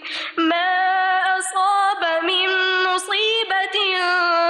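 A woman reciting the Quran in Arabic in a melodic chant, long held notes that bend and break every second or so, with a short breath at the start.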